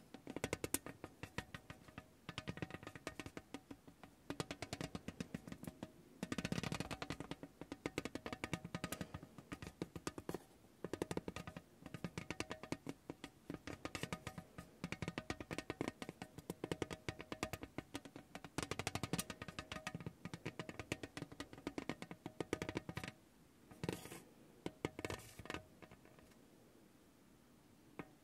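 Spiky massage ball rolled and pressed by hand across a tin tray, its nubs striking the metal in a fast, uneven patter of clicks over a faint ringing note from the tray. The clicking stops briefly near the end, then comes back as a few single clicks.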